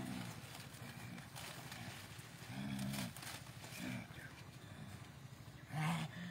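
A man's voice making low, wordless sounds, a few short ones about half a second each: at the start, near the middle and about four seconds in.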